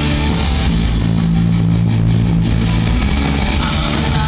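Live rock band playing an instrumental passage on electric guitar and bass, with sustained low bass notes and no vocals.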